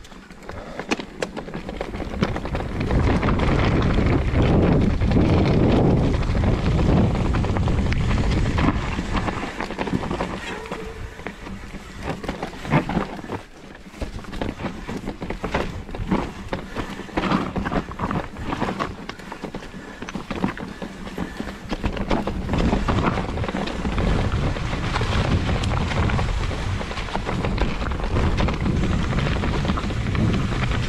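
Mountain bike descending a rocky, leaf-strewn trail, heard from a handlebar-mounted action camera: wind buffets the microphone while the tyres run over stones and dry leaves and the bike rattles over the bumps. It builds up over the first few seconds and eases briefly about halfway through.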